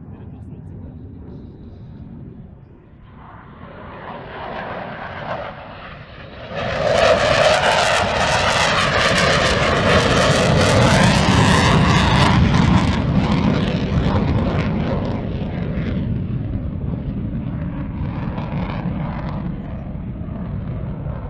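Su-22 Fitter fighter-bomber's single Lyulka AL-21F-3 afterburning turbojet on a low pass. The jet roar builds from about three seconds in and jumps to a loud peak at about seven seconds, with sweeping, shifting tones as it passes. It then dies away slowly.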